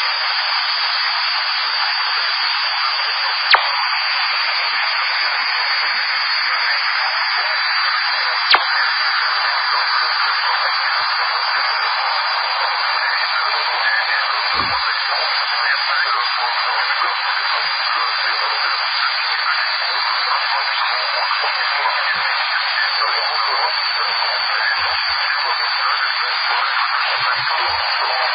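CB radio receiver on the 27 MHz band giving a steady, loud hiss of static squeezed into a narrow mid-range audio band. Two sharp clicks cut through it, one a few seconds in and one about eight seconds in.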